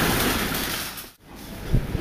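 Steady background noise of a busy supermarket entrance, dipping briefly to near silence about a second in, with a dull thump near the end.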